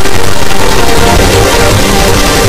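Loud, dense electronic dance music with heavy bass, hardcore techno from a rave mix.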